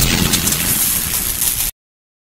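Loud rushing noise from a subscribe-card animation's sound effect, fading a little and then cutting off suddenly near the end into silence.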